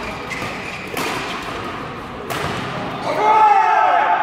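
Badminton rackets striking the shuttlecock hard, with sharp hits about a second in and again past two seconds. Near the end comes a loud shout from a player as the rally ends.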